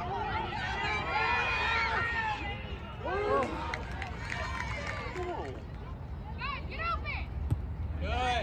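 Many voices calling and shouting over one another, with a string of short, high-pitched shouts near the end.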